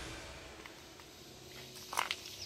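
Quiet outdoor background with no clear source, and a single short click near the end.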